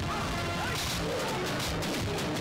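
Film fight-scene sound effects: about four sharp punch and impact hits in quick succession, over a background music score.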